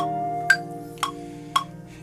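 Ableton Live's metronome clicking about twice a second, in time with a looped electric guitar part whose held notes sound underneath and fade away.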